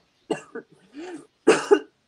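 A person coughing several times, loudest in a double cough about one and a half seconds in.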